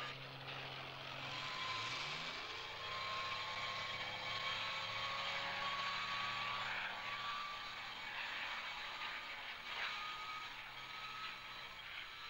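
Recorded engine drone, a sound effect in a song intro: its pitch slides upward about two seconds in, then holds steady with a faint whir.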